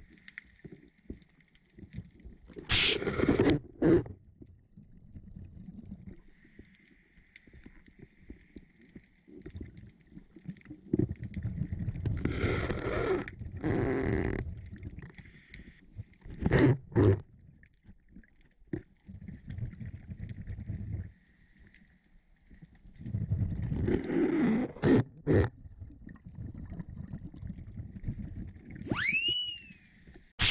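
A scuba diver breathing through a regulator: soft hissing inhalations alternate with loud, rough bubbling exhalations, several breath cycles in all.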